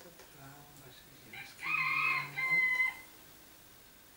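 A rooster crowing once, starting about a second and a half in: one loud call of just over a second in two parts, much louder than the quiet voice before it.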